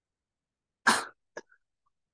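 A man coughing once, short and sharp, a little under a second in, with a faint second catch in the throat just after.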